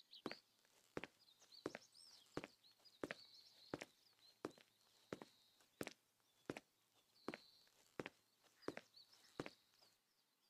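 Footsteps at an even walking pace, about one and a half steps a second, with faint bird chirps in the background.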